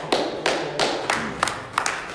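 A person clapping hands in a steady run of sharp claps, about three a second.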